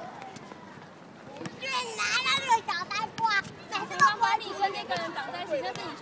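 Children's voices shouting and calling out to each other during an outdoor game, several high voices overlapping, starting about a second and a half in.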